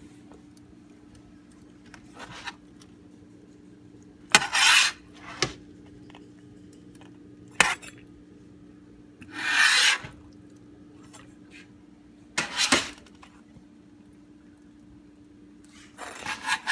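Pizza wheel cutter rasping through a baked crust against a metal pizza pan in about six short strokes a few seconds apart, over a steady low hum.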